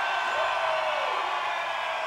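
Large concert crowd cheering, with steady held tones from the stage ringing underneath. A single shout rises and falls about half a second in.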